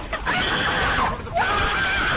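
A high-pitched scream: two long held cries, each about a second, rising sharply at the start and falling away at the end.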